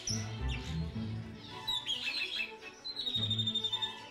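Small birds chirping, then a fast high trill in the last second or so, over background music.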